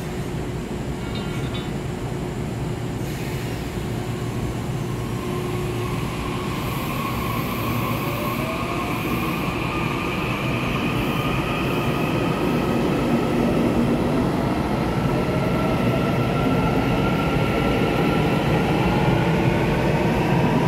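Taiwan Railway EMU800-series electric multiple unit pulling out of an underground station: a traction-motor whine that climbs steadily in pitch as the train accelerates, over the rumble of wheels on rail, growing slowly louder. The sound echoes off the station's hard surfaces.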